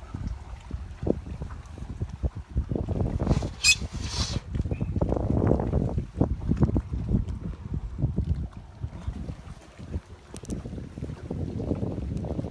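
Wind buffeting the microphone in uneven low gusts over water slapping against the side of a small aluminum boat. A brief hissing burst comes a little before four seconds in.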